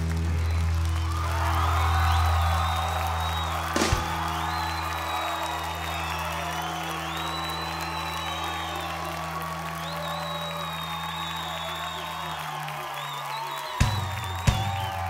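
A rock band's final chord rings out, with low bass notes held while a crowd cheers and whistles. The held notes die away near the end, and sharp stick clicks come just before the end.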